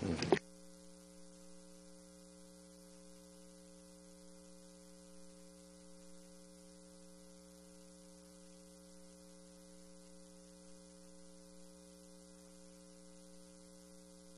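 Faint, steady electrical hum: several low tones held level under a light hiss. The room sound cuts off about half a second in.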